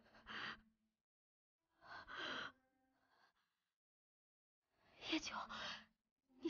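Three short, soft breaths from a person, separated by silence: one near the start, one about two seconds in, and one about five seconds in.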